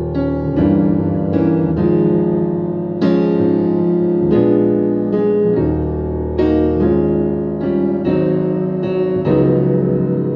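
Solo digital piano playing a slow gospel arrangement: full chords over bass notes, struck every half second to second and left ringing.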